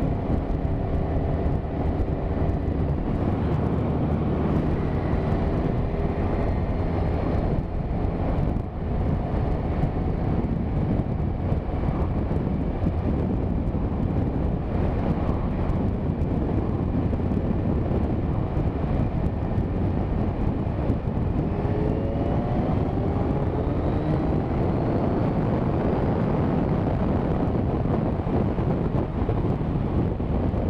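Kawasaki Z1000 inline-four motorcycle engine running at road speed under heavy wind rush over the microphone. About two-thirds of the way in, its note rises steadily as the bike accelerates.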